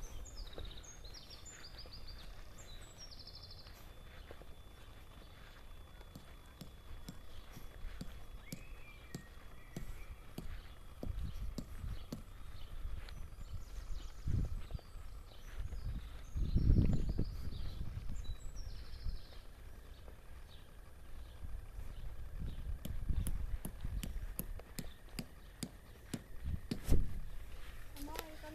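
Outdoor ambience: birds chirping now and then, with scattered low thumps and rumbles of footsteps on grass and handling of the camera. The loudest is a low rumbling burst about two-thirds of the way through.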